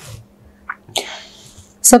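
A woman's speech pauses, and about a second in she takes a short, sharp breath before talking again near the end.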